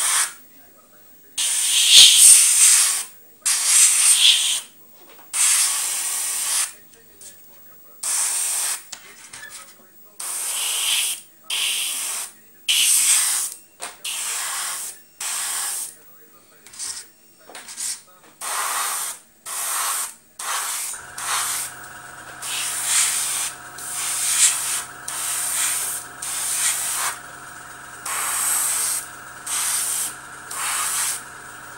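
Airbrush spraying paint in short hissing bursts, roughly one a second, with brief gaps between them. About two-thirds of the way through, a steady hum comes in under the bursts, typical of the airbrush's compressor motor switching on.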